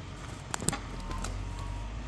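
Vimek 870 forwarder's diesel engine running steadily, a low drone, with two sharp cracks a little after half a second in.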